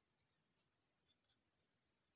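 Near silence, with a couple of faint small ticks about a second in from the wooden jaw-harp case and its cord being handled.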